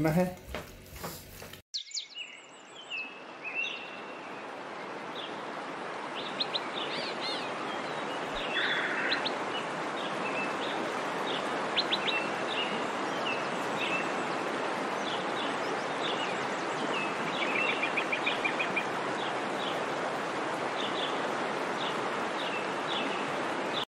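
Birds chirping and trilling over a steady rushing background noise, which starts after a sudden cut about two seconds in and swells over the next few seconds.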